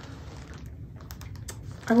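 A quick, irregular series of light clicks and taps as small items are picked up and handled.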